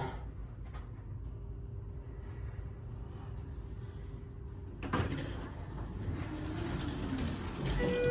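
Center-opening doors of a Schindler 330A hydraulic elevator sliding, with a faint steady hum, a sharp knock about five seconds in, then a louder steady hiss.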